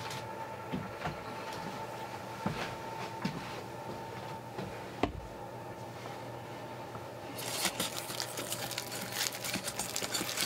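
A faint steady hum with a few small clicks, then from about seven seconds in a dense wet squishing and crackling as hands knead Impossible Burger plant-based ground meat with its seasonings in a stainless steel bowl.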